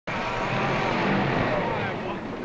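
Engine of an early open touring car running as the car drives in, a steady low engine sound.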